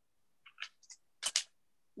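A few soft, brief clicks and rustles from a phone being handled, the loudest a short knock a little past the middle, with near silence between them.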